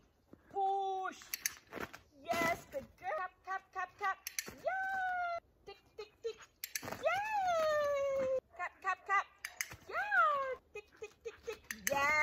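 A woman's high-pitched, sing-song voice calling short verbal cues and praise to a dog, including a long call that rises and then falls about seven seconds in. A few sharp clicks sound in the first few seconds.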